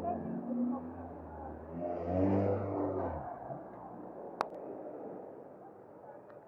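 A car driving past on the street, its low engine sound ending about three seconds in, under the voices of passers-by talking. A single sharp click about four seconds in.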